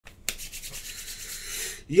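A click, then about a second and a half of scratchy rubbing close to the microphone, from a hand brushing against hair and clothing.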